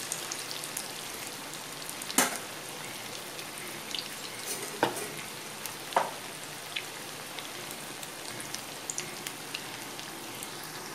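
Chicken pieces deep-frying in hot oil in a kadai: a steady sizzle with a few sharp pops, the loudest about two seconds in.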